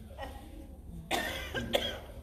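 A person coughing once, a short burst about a second in.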